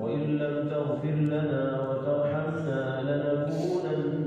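A man's voice chanting in long, sustained melodic lines, in the manner of religious recitation.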